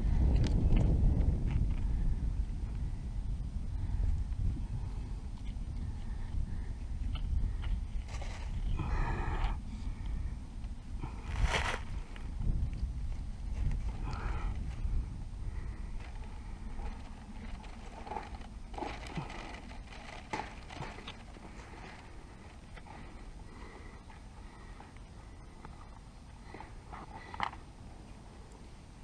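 Hands handling a wire snare and stirring dry leaves at the foot of a chain-link fence, close to the microphone: irregular rustles, scrapes and small clicks, with a sharp click about eleven seconds in. Under them is a low rumble that fades over the first half.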